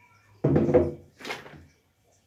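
Jars set down on a wooden counter with a thunk about half a second in, followed by a shorter rustle as a flour packet is picked up.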